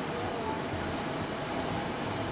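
Plastic blind-bag toy wrapper crinkling and rustling in small, irregular crackles as it is pulled open by hand, over a steady low background hum.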